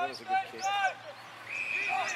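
Players calling out across an Australian rules football field in short, high-pitched shouts. About a second and a half in, a steady whistle note starts and holds for about a second, typical of an umpire's whistle.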